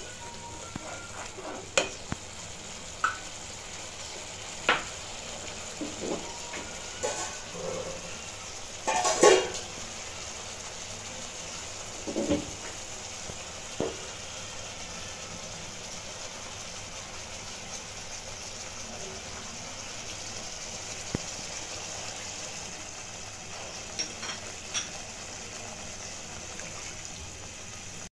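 Masala gravy sizzling steadily in a nonstick pan, with a wooden spatula now and then knocking and scraping against the pan; the loudest knock comes about nine seconds in.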